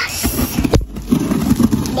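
Plastic bubble wrap being handled in the hands, crinkling and crackling, with one sharp click about three quarters of a second in.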